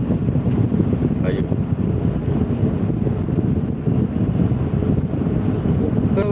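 Steady low road and engine rumble inside a moving car.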